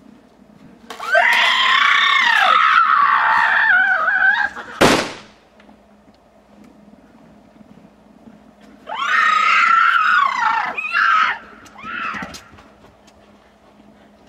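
Boys' voices yelling in mock caveman war cries: a long yell with a swooping pitch about a second in, cut by a single sharp bang, then another long yell and a shorter one in the second half.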